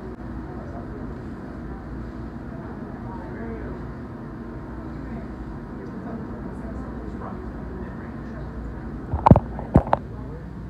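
Steady restaurant background hum with indistinct murmured voices. Near the end, a few sharp, loud knocks from the phone being handled and bumped.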